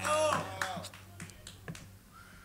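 A man laughs briefly as an acoustic guitar song ends, then the music falls away, leaving a few faint, sharp clicks.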